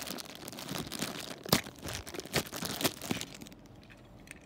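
Plastic wrapper crinkling and rustling as a small plastic toy is pulled out of its bag, with a sharp click about a second and a half in. The crinkling dies away near the end.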